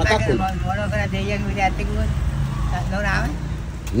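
Speech: a voice talking in short, fairly faint phrases over a steady low background rumble.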